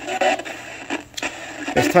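Portable radio giving out a steady static hiss, with a brief faint voice-like fragment near the start and a couple of clicks about a second in.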